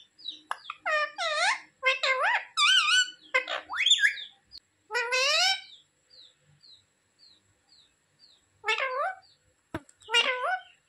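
Rose-ringed (Indian ringneck) parakeet giving a quick run of pitched, sliding calls and squawks in the first four seconds and again at about five seconds. A string of faint short chirps follows, then more calls just before the end and a single sharp click.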